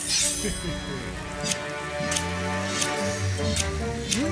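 Cartoon background music with sound effects of a car's bumper-mounted trimming blades: a falling swish at the start, then a few sharp snipping clicks.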